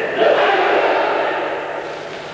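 A group of karateka shouting together, a drawn-out group kiai that fades over about a second and a half.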